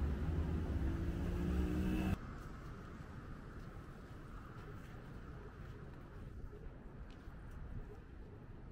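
Street traffic with a nearby car engine humming steadily. About two seconds in, the engine sound drops off suddenly, leaving quieter, distant city traffic noise.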